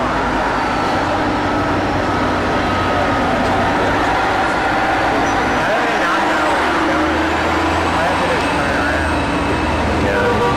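City street traffic: motor vehicle engines running and tyre noise, with a low engine rumble growing stronger in the second half, under the chatter of a crowd of people nearby.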